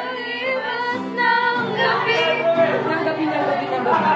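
Several young women singing together to a strummed acoustic guitar, with some chatter mixed in.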